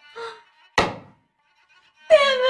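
A single sharp thump a little under a second in, over faint background music holding a steady note.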